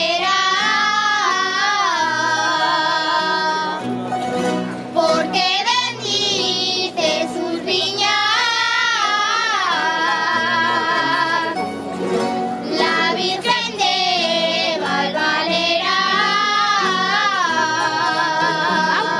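Children singing a jota in unison, long phrases with strong vibrato on the held notes, over a rondalla of strummed and plucked guitars and bandurria-type lutes. The voices break off briefly about four seconds in and again about twelve seconds in, leaving the strings alone.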